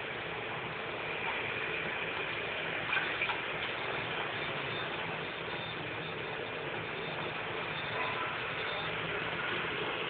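A steady hum and hiss with the soft scraping of a ladle stirring thick wheat paste in an aluminium pot, and a faint knock about three seconds in.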